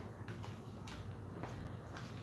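Quiet room with a low steady hum and a few faint, scattered clicks and light knocks.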